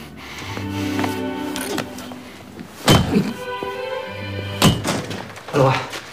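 Film score music with sustained low held notes, broken by two heavy thuds, one about three seconds in and one near five seconds.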